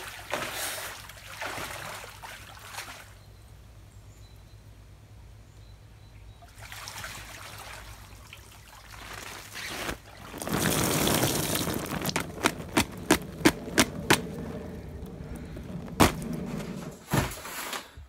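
Water sloshing and splashing in a small inflatable pool as a man lies in it, then, about ten seconds in, a louder rush of water pouring off him as he stands up. A run of sharp knocks or slaps follows over the next few seconds.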